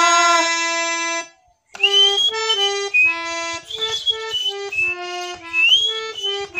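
A man's sung note held to the end of a line and dying away about a second in, then after a brief gap a harmonium plays a stepwise melody of short, separate reed notes.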